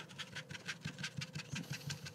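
A rapid, even run of small light clicks or rattles, about ten a second.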